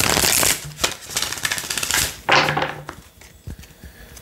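A deck of oracle cards being riffle-shuffled by hand: a rapid flutter of card edges at the start, then a second, longer flutter about a second in, fading to a few faint card clicks near the end.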